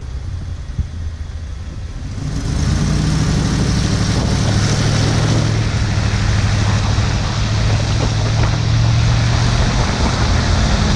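Ford F-250's 6.2-litre V8 pulling away while towing a heavy load, its low engine note steady under the noise. About two seconds in, rushing wind on the microphone and tyre hiss on the wet road rise and stay loud.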